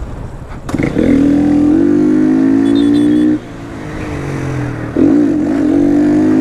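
Motorcycle engine at high revs under hard throttle, its note climbing slowly, then easing off about three and a half seconds in. The throttle opens wide again about five seconds in, and there is wind rush under it.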